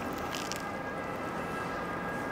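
Steady background noise of a city street with distant traffic, and no single clear event standing out.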